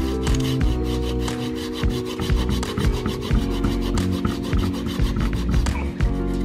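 Small hand pruning saw cutting through a ficus rumphii bonsai branch in rapid back-and-forth strokes, wood rasping under the teeth, over background music.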